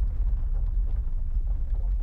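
A steady, deep low rumble with a faint hiss above it, with no clear beat or pitch.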